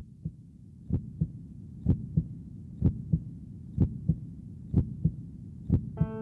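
Heartbeat sound effect: a slow double thump, lub-dub, about once a second, over a faint low hum.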